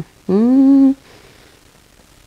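A woman hums a short closed-mouth 'mmm' that rises in pitch and then holds level for under a second.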